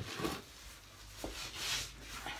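Fingertips rubbing lightly over a stamp pressed onto a painted wooden bureau: faint scuffing and rubbing, with a light click at the start and another just past a second in.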